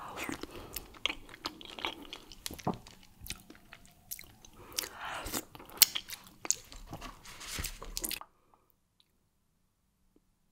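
Close-miked chewing of fufu dipped in palm nut (banga) soup: wet, sticky mouth sounds with many sharp smacks and clicks. It stops abruptly about eight seconds in.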